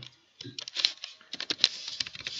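Computer keyboard typing: an irregular run of quick key clicks that starts about half a second in.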